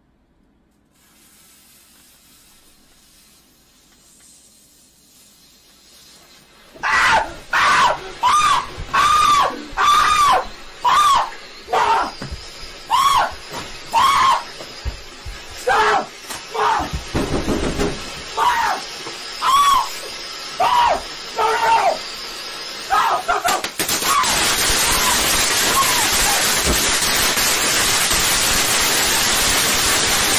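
A lit firework fuse hissing faintly, then a person screaming over and over in short, high yells. About three-quarters of the way through, the firework fountain goes off indoors with a loud, steady spray of sparks that drowns everything.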